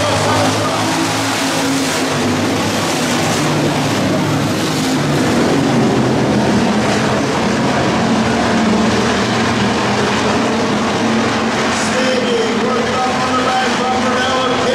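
Several hobby stock dirt-track race cars' engines running as they circle the oval. It is a steady, loud engine drone whose pitch shifts as cars accelerate and pass.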